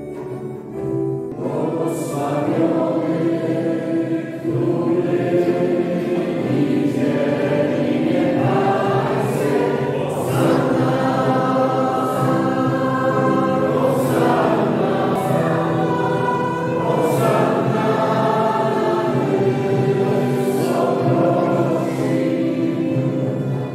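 A choir singing a hymn, coming in about a second in over steady instrumental accompaniment.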